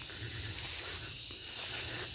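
A steady, high-pitched chorus of insects droning in the background.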